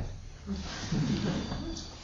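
A faint, low human voice murmuring briefly in the room during a pause in the talk, over a steady low hum.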